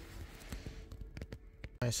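Faint quiet background with a few light clicks and a faint steady hum, then a man's short spoken word just before the end.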